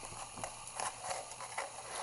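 Hands twisting the threaded orange plastic ring of a pocket shot slingshot against its rubber pouch, giving a few faint plastic clicks and rubbing sounds. The ring is screwed on stiffly and resists unscrewing.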